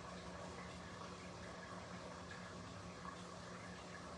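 Faint steady room tone: a low, even hum with a soft hiss.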